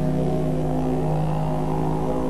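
Background music: a didgeridoo playing one steady low drone note.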